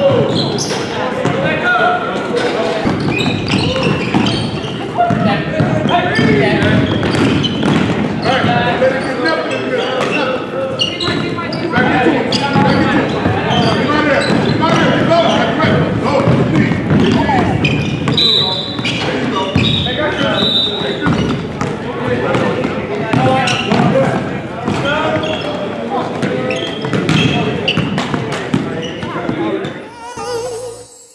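Live basketball game in a gym: a ball bouncing on the hardwood floor amid many short knocks, with players' and onlookers' voices echoing in the large hall.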